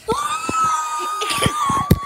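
A child's long, high-pitched scream, held on one pitch and starting to slide down near the end, with a few knocks and bumps from the toys and camera being handled.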